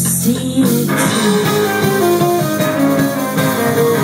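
Live band playing a song, guitars and bass to the fore, recorded from the crowd on a phone; the sound grows fuller about a second in.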